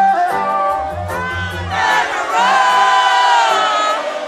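Concert audience singing a line together over a live reggae band, their part of a call-and-response. About halfway through, many voices swell into one long held note, with the band's bass and beat underneath.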